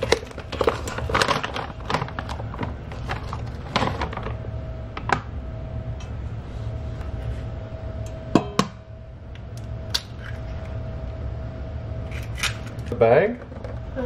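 Raw ground meat being emptied from a plastic bag into a stainless steel dog bowl and handled in it, with bag rustling and scattered knocks and clinks of the metal bowl. A faint steady hum runs through the middle.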